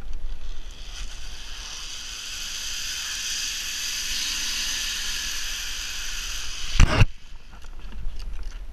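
Zip-line trolley pulleys running along the steel cable: a high whirring whine that builds from about a second in and holds steady, then stops near the end with a loud clunk as the rider is brought to a halt at the landing platform.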